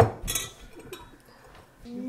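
A spoon stirring sugar into hot water in a cup, clinking against the sides: a sharp clink at the start, another just after, then fainter scraping and tapping. The stirring dissolves the sugar before it goes into the kefir.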